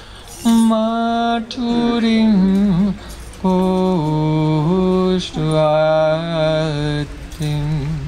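A man chanting a Sanskrit verse into a microphone in a slow melodic recitation: long held notes that step down in pitch, in about five phrases with short breaths between them.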